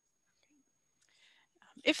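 Near silence on a video-call recording, then a faint breath-like hiss, and a voice begins speaking just before the end.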